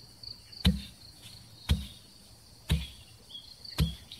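Four dull, heavy thuds evenly spaced about a second apart, a hoe chopping into soft soil, over a steady high chirring of insects.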